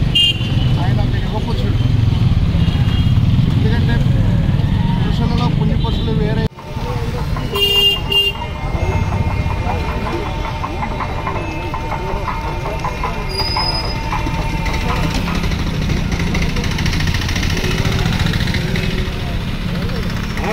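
Busy street sound of motor traffic and people talking, with a vehicle horn honking once briefly about eight seconds in.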